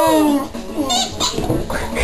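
A female Boxer dog whining in a long, high, wavering tone that ends about half a second in. Shorter, broken vocal sounds from the dog follow.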